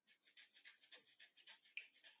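Fingernails scratching short hair on the back of a man's head, a faint rapid rasping of about seven strokes a second that starts suddenly.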